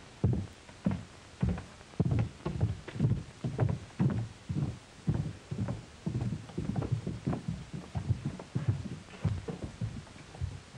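Boots walking on a wooden boardwalk: a steady run of hollow footfalls, about two steps a second.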